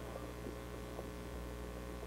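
Steady low electrical mains hum in the audio chain, with faint background noise and nothing else.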